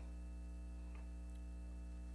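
Steady low electrical mains hum with a stack of even overtones, picked up through the hearing room's microphone and sound system, with a faint tick about a second in.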